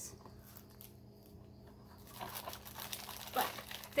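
Clear plastic wrap around a bath bomb crinkling as it is handled. The first half is quiet, then a run of crinkles starts about halfway through.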